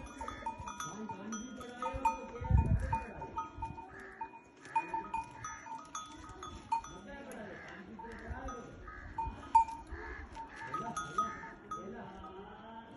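Livestock bells clinking and ringing irregularly, with animal calls from the herd. A dull low thump comes about two and a half seconds in.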